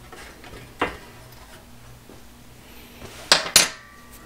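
Metal parts clanking on a workbench: a light click about a second in, then two sharp metallic clanks about a quarter second apart near the end, as the sheet-metal heat shield and hardware are handled.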